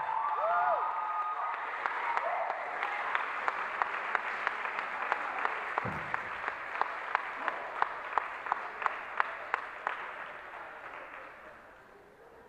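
Audience applauding, with a few cheers at the start; the clapping falls into a steady rhythmic clap of about three claps a second, then fades out near the end.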